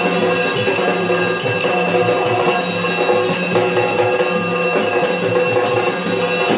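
Yakshagana stage ensemble playing: a barrel drum beating a steady rhythm over a held drone, with continuous jingling of bells and small cymbals.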